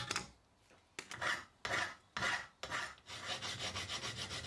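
Hand file strokes on a small mild steel part held in a bench vise: starting about a second in, four rasping strokes about half a second apart, then quicker, lighter strokes near the end.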